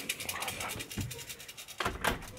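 Handling noise from a phone held against a cotton hoodie: a fast, even run of scratchy rustles, ending in a sharp knock near the end.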